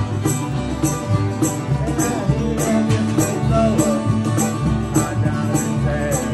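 Live acoustic country/bluegrass jam: strummed acoustic guitar, banjo and upright bass over a box drum (cajon) keeping a steady beat of sharp hits about twice a second. A few sliding notes come in the middle.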